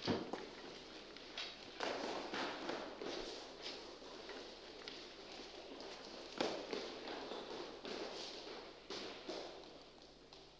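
Footsteps on a hard floor mixed with the rustle of bedding being handled. There is a sharp knock right at the start and another about six and a half seconds in.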